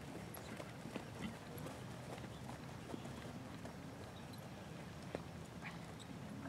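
Faint hoofbeats of a horse moving over a sand arena, heard as a few soft, irregular knocks over a low steady background rumble.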